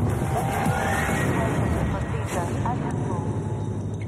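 Street traffic noise with indistinct voices: a steady low rumble with a couple of brief whooshes and a few short chirps around the middle.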